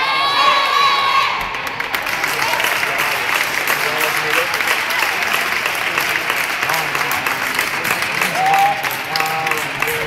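Girls' basketball team shouting their war cry together from a huddle, a long shout in unison that breaks off about a second in, followed by cheering and clapping with scattered excited voices.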